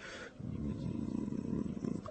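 A man's low, creaky throat sound, a drawn-out hesitation grunt in his voice, starting about a third of a second in.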